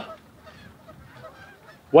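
A goose honks right at the start, then faint calls and water-side background sound follow until a man's voice breaks in at the end.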